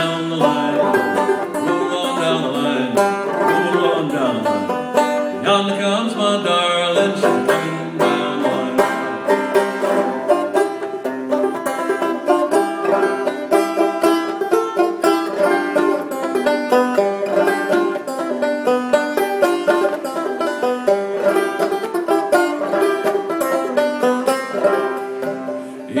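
Banjo played solo, a steady stream of quickly plucked notes through an instrumental break between verses of a folk song.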